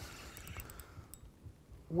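A quiet pause in talk: faint low outdoor background rumble with a couple of faint light clicks.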